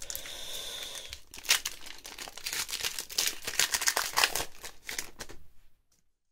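A Pokémon booster pack's foil wrapper being torn open and crinkled by hand as the cards are pulled out, with a sharp rip about one and a half seconds in and dense crinkling after it. It cuts off suddenly just before the end.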